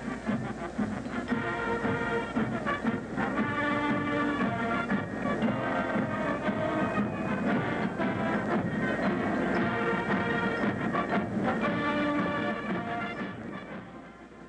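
Brass band music playing, fading out near the end.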